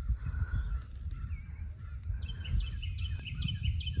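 A bird calling outdoors: a quick run of about six short high notes about two seconds in, over a steady low rumble on the microphone.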